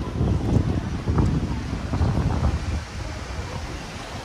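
Wind buffeting the microphone in irregular gusts, a low rumble that eases off near the end.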